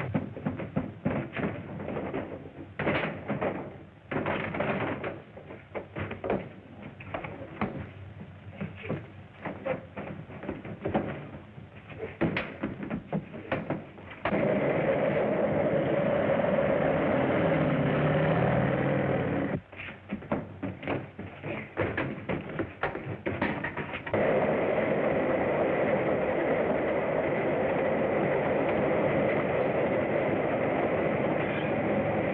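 Rapid, irregular clicking and tapping, broken by two long stretches of steady rolling rail noise from a runaway boxcar running on the track; the second stretch starts about two-thirds of the way in and runs on. The sound is dull and narrow, like an old film soundtrack.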